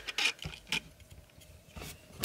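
Plastic parts of an X-Transbots Aegis transforming robot figure being handled during transformation: a few light clicks and faint rubbing as panels and joints are moved.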